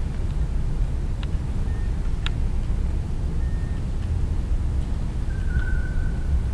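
Steady low rumble of room noise in a large hall, with a couple of faint clicks and a few brief faint high beeps.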